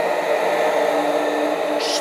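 Bissell Big Green deep cleaning machine running steadily as it is pulled back over carpet with the solution trigger held, its vacuum motor and rotating scrubbing brush going at once.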